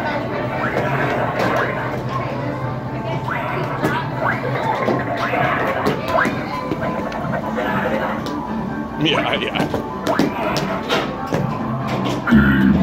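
Busy arcade din: background music and chatter, with short cartoonish blips and hits from arcade game sound effects.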